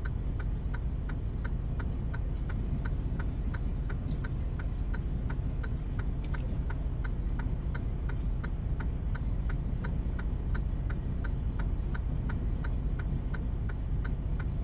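Steady low rumble of the idling semi-truck's engine heard inside the cab, with an even light ticking of about three to four ticks a second running through it.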